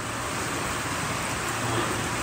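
Steady rushing noise of an indoor swimming pool hall, with the pool water and air handling making an even hiss.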